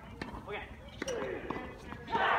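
Tennis ball bounced on a hard court by the server before his serve: a few short, sharp knocks spread over the two seconds.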